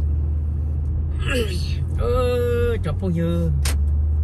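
Steady low rumble of a car driving slowly, heard from inside the cabin, with a man talking over it.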